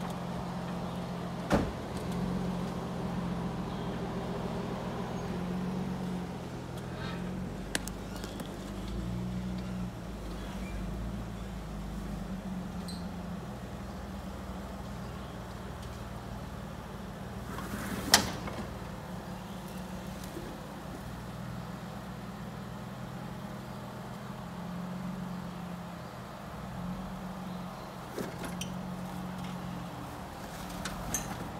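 Jeep Wrangler engine running at low revs as it crawls over rock, its note swelling and easing with the throttle. Two sharp knocks cut through, one about a second and a half in and a louder one about eighteen seconds in.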